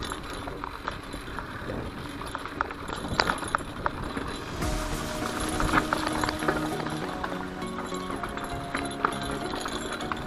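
Mountain bike riding along a dirt forest trail: tyre and trail noise with irregular clicks and rattles from the bike over roots and rocks. Background music comes in about halfway through.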